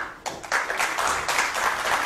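Audience applauding, with many hands clapping together, starting about half a second in.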